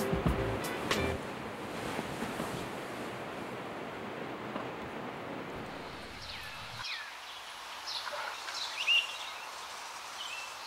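Steady hiss of rain. Near the end it quietens and a few short bird chirps are heard.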